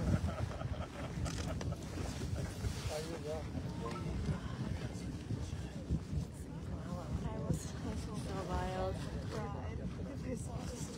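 Continuous low rumbling noise from Kilauea's erupting lava fountain, mixed with wind buffeting the microphone. Faint voices come through about three seconds in and again near the end.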